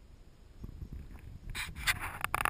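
Faint low rumble, then from about a second and a half in, rubbing and scraping noises close to the microphone, irregular and getting louder.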